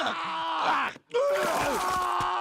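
A cartoon character groaning and moaning in pain, with a short break about halfway through before a longer, steadier groan.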